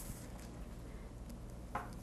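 Quiet room hum with faint rustling of thread and jute canvas being handled as a rug edge is hand-stitched, and a short sound near the end.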